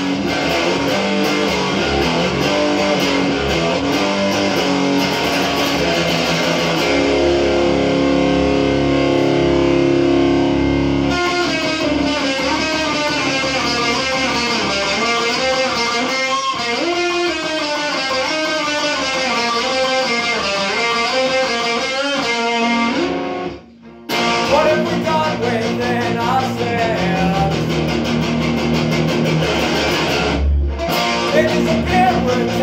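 Electric guitar being played, Stratocaster-style: dense chords up to about eleven seconds in, then a more melodic passage with notes bending up and down. There is a brief stop a few seconds later, before the playing starts again.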